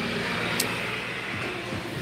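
Steady background hum and hiss of a large exhibition hall while stands are being built, with one light click about half a second in.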